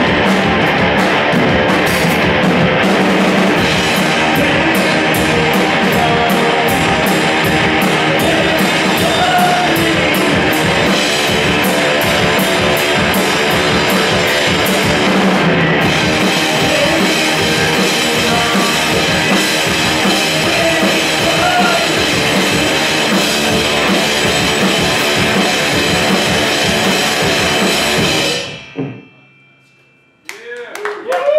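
A live rock band at full volume: electric guitar, electric bass and a drum kit with busy cymbal strikes that drop back about halfway through. The song stops abruptly about two seconds before the end.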